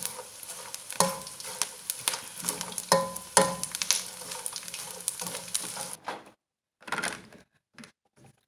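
Edible gum (gond) puffing and sizzling as it fries in ghee in a metal pan. It is stirred with a steel spoon that scrapes and clicks against the pan. The frying cuts off abruptly about six seconds in, followed by a few faint knocks.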